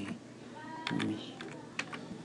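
Computer keyboard being typed on: a few separate keystroke clicks as the last letters of a word go in.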